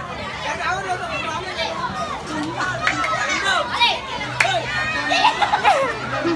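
A crowd of children chattering and shouting over one another, with a few louder high-pitched shouts near the end.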